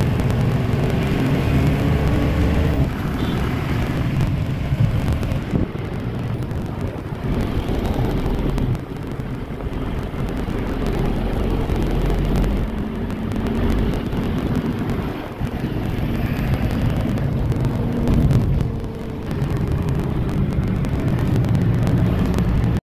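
Steady engine and road noise heard from inside a moving Tempo Traveller minibus in city traffic.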